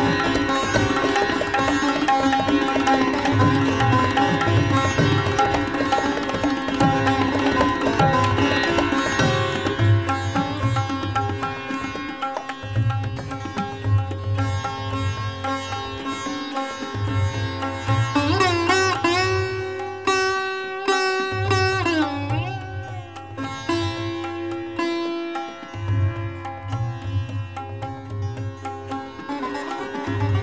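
Sitar playing Raag Puriya in a fast drut gat set to teentaal, with rapid plucked strokes over the ringing strings. About two-thirds of the way in, notes are pulled into long sliding bends (meend).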